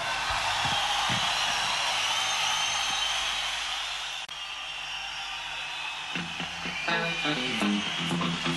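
Audience applause after a song ends in a live rock concert, a steady noisy wash that drops in level a little past halfway. About six seconds in, plucked guitar notes start the next song.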